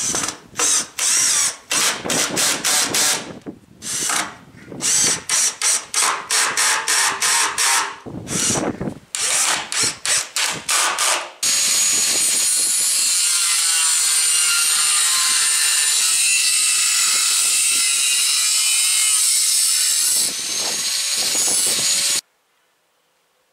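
A hand-held power drill run in many short bursts, each well under a second, as screws are driven into the shed's trim. About eleven seconds in, a power tool starts running steadily and keeps going for about nine seconds while a steel strip is worked.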